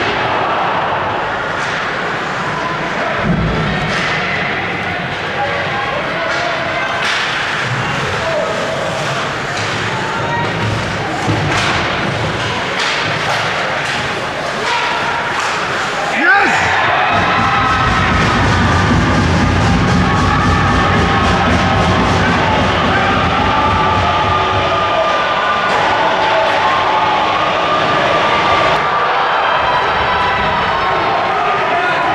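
Ice hockey rink sound: sharp clacks of sticks and puck over the steady noise of skates and spectators. About halfway through, the crowd suddenly breaks into loud cheering and shouting that carries on to the end.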